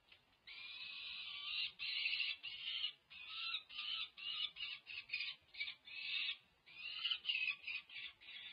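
Peregrine falcon calling with loud harsh screams: one long call starting about half a second in, then a quick run of shorter harsh calls, about three a second.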